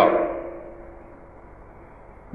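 A man's voice finishing a word and fading out with a short lingering ring, then a pause with only a faint steady background hiss.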